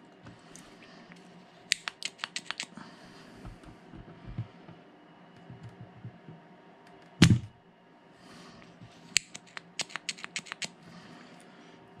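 Spring-loaded desoldering pump (solder sucker) firing once with a sharp snap about seven seconds in, as it sucks molten solder off a rail joint. Runs of light clicks and taps of the tools against the track come before and after it.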